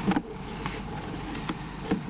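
Steady hall room noise picked up by a lectern microphone, with a few short clicks and rustles of papers being handled at the lectern.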